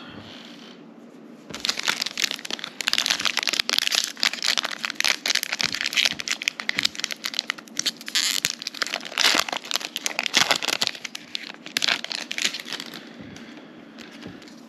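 Plastic wrapper of a Panini Prestige 2023 football card pack crinkling and tearing as it is ripped open and pulled off the cards. A dense run of crackles starts about a second and a half in and dies away near the end.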